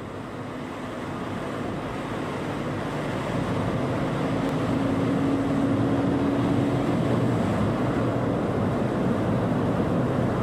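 Steady road and engine rumble of a car driving through a road tunnel, fading in over the first few seconds. A low steady tone joins in for a couple of seconds around the middle.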